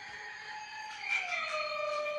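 Electronic tones from a battery-powered toy car: long held electronic notes that step down in pitch about a second in.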